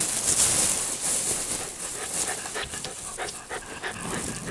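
A plastic bag rustling and crinkling as hands dig a present out of it, loudest in the first second or so, then trailing off into scattered crinkles.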